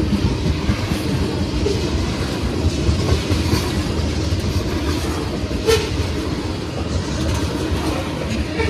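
Freight train tank cars rolling past close by: a steady rumble of steel wheels on the rails. A little past halfway there is one sharp clank.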